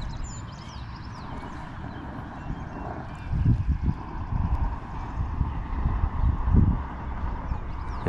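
Low rumbling and irregular bumps, loudest about three and a half and six and a half seconds in: close handling noise as hands rub a fish-attractant scent stick onto a spinner's hook. A few faint high chirps come near the start.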